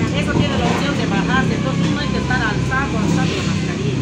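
People talking in Spanish, not clearly made out, over a steady low hum of street traffic.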